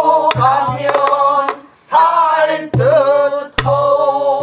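A group of men and women singing a pansori passage in unison, holding long notes with wavering pitch. A few sharp strokes of a buk barrel drum mark the rhythm.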